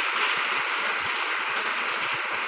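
A steady, even hiss with a few faint low knocks, between phrases of speech.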